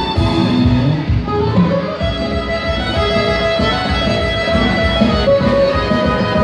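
A live band playing, with a fiddle carrying the tune over accordion, guitar, bass guitar and drums, and a steady beat throughout.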